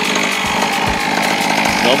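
Small 50cc dirt bike engine running steadily, a fast, even buzz close by.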